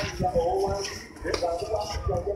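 Voices talking and calling out in the background during a kickboxing sparring session, with a few faint knocks.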